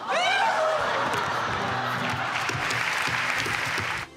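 Studio audience applauding and cheering over light background music, after a short shout in the first second.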